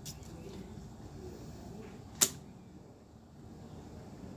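A single sharp tap on a glass tabletop about two seconds in, as tarot cards are handled, over faint room sound.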